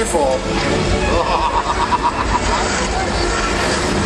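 Busy film soundtrack: vehicle engine noise mixed with indistinct voices, with no break.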